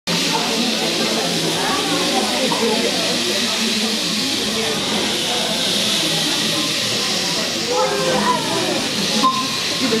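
Several rainsticks tipped slowly together by a group of players, giving a steady rushing hiss of pellets trickling down inside the tubes, with children's voices murmuring underneath.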